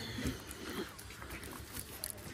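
A short, soft laugh in the first second, over low background noise.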